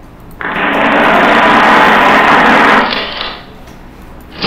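A loud, steady whirring noise that starts just under half a second in, lasts about two and a half seconds, and dies away.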